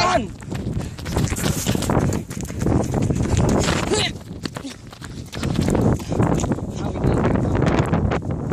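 People running on foot, with footfalls thudding and a handheld phone jostling as it is carried, and wind buffeting the microphone.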